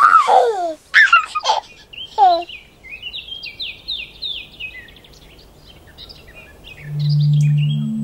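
Birdsong: a few loud descending calls in the first two and a half seconds, then a run of quick repeated high chirps. Near the end a low steady tone swells in and becomes the loudest sound.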